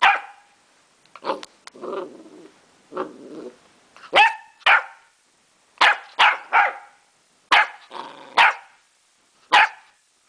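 Small dog barking at close range in short, sharp single barks, about nine of them, some in quick pairs and triplets. Between the first barks, around two and three seconds in, it gives low growls.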